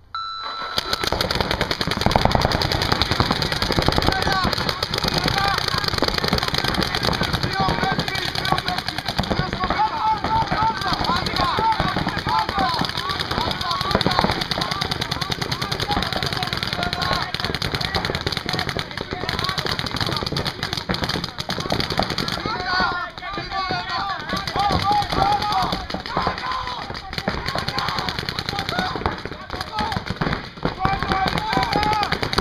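Many paintball markers firing in rapid, continuous strings, a dense popping that starts abruptly and keeps up throughout. Players' voices shout over the fire.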